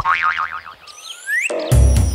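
Cartoon sound effects: a boing and rising whistle-like glides with a wobbling tone. About three-quarters of the way through, the upbeat children's theme music starts with a heavy bass beat.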